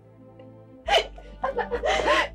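A woman sobbing over soft background music: a sharp, gasping sob just under a second in, then a longer, wavering crying cry near the end.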